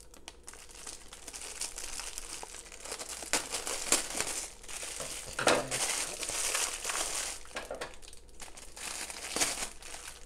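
Clear plastic packaging crinkling and rustling as hands grip and work it, with scattered sharp clicks and stronger surges of crackling every few seconds.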